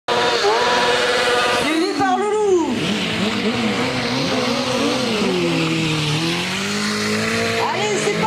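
Sport motorcycle engines revving hard, their pitch rising and falling again and again, over a steady hiss of a spinning, skidding rear tyre during stunt riding.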